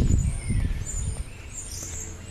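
Small birds chirping with short, thin, high calls, over a low rumble during the first second.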